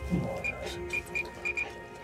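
A wall-mounted dial being turned by hand, each step giving a short high beep in a quick, uneven run.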